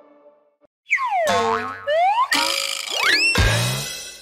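A held synth chord fades out, then after a short gap comes a run of cartoon sound effects: springy boing glides sweeping down and up in pitch, a quick rising whistle, and a low thud about three and a half seconds in.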